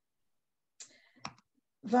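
Near silence on a video-call line, then a faint rustle and a single sharp click about a second in. A woman starts speaking at the very end.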